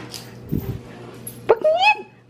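A pet dog whining: a short whine that starts sharply and rises in pitch, in the last half second.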